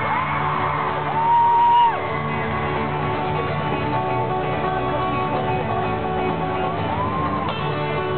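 Several acoustic guitars strumming an instrumental passage live over an arena PA, heard from within the crowd. About a second in, a loud high-pitched shout from a nearby fan rises, holds for under a second and drops away, and a softer one comes near the end.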